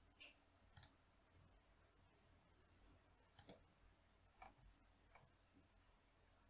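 Faint computer mouse clicks, a few single clicks and quick pairs spread out over near silence.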